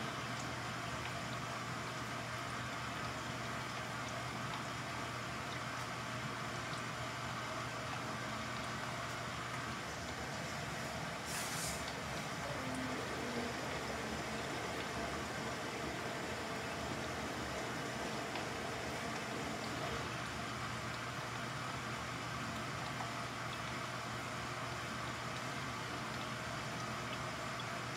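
Samsung front-loading washing machine running on its permanent press cycle: a steady motor hum as the drum turns the wet load. A brief high-pitched sound about eleven seconds in.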